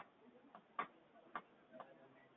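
Faint taps and clicks of chalk on a chalkboard as figures are written, three light ticks about half a second apart.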